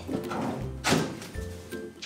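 Drop-down door of a Hitachi microwave oven swung shut with a single thunk about a second in, over background music.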